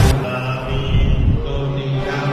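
Buddhist monks chanting sutras together in a low, steady recitation.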